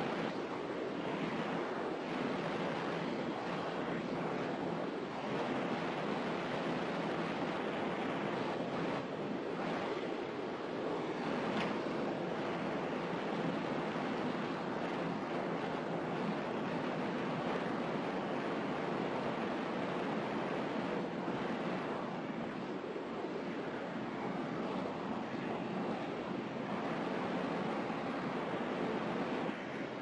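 Steady rushing background noise with no distinct events and no speech.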